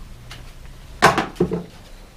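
Two short metallic clacks about a second in, a quarter-second apart, from hands working on a bicycle's rear wheel in a repair stand at the start of a flat-tyre repair.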